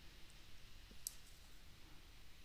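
Near silence with a faint click about a second in.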